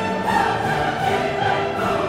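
Classical orchestral music with choral voices, sustained notes held and moving smoothly.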